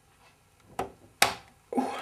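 Two sharp plastic clicks, about half a second apart, as a RAM module is pressed down into its memory slot in a Power Mac G5. A man's voice starts just before the end.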